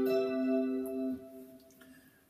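Electric guitar playing a C major 7 chord in root position, struck once and left to ring as it dies away. The upper notes fade out a little past the first second, and the rest decays to near quiet toward the end.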